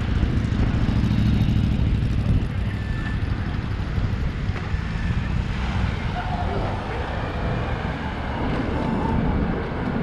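Street traffic at a city crossing: a car drives past close by in the first two seconds or so, then a steadier hum of traffic.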